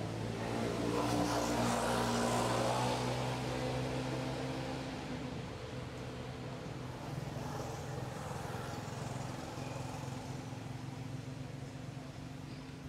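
A motor vehicle's engine running steadily nearby, growing louder over the first few seconds, then fading.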